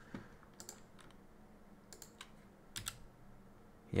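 Faint, scattered keystrokes on a computer keyboard: a handful of separate clicks while code is being edited.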